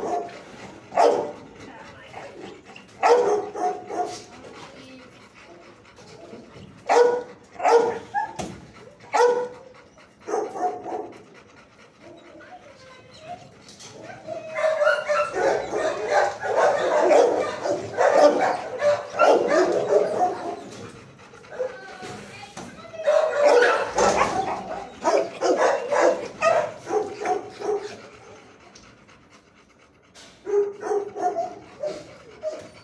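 Dogs barking in a shelter kennel: spaced single barks through the first ten seconds or so, then two longer stretches of continuous barking and whining, each lasting a few seconds.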